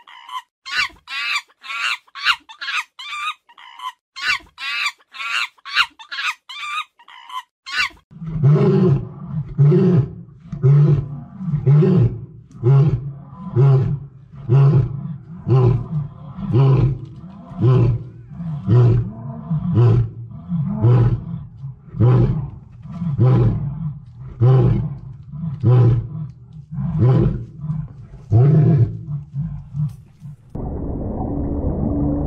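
A sleeping lion snoring, with a deep rasping pulse on each breath a little under once a second. It is preceded, for about the first eight seconds, by a rapid series of high-pitched chirping calls, two or three a second, which cut off suddenly.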